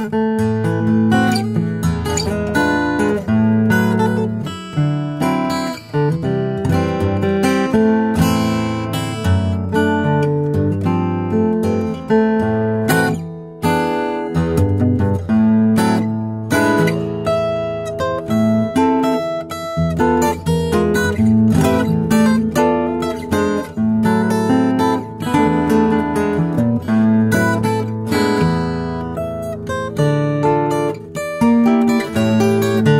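Custom R.W. Scheurenbrand acoustic guitar played solo fingerstyle, plucked melody notes over low bass notes in a continuous tune.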